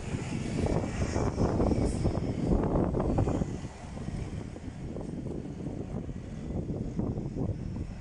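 Street traffic: a bus passes close by, its engine and tyre rumble loudest for the first three seconds or so, then fading into the lower steady rumble of passing cars.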